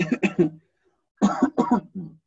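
A man coughing in two short bouts of quick coughs, the second starting a little over a second in.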